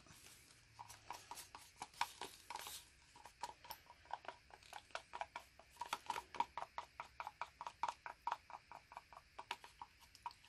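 Wooden stirring stick knocking against the inside of a small plastic cup of paint in a quick, even rhythm of about four faint clicks a second, as the thick metallic paint is worked and scraped out of the cup.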